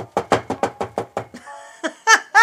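A telephone being dialled: a quick run of about nine evenly spaced clicks, about six a second, over a low hum, followed near the end by a brief steady tone.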